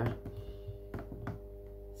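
A few faint, sharp computer-mouse clicks while clips are dragged in the editor, over a steady low background hum.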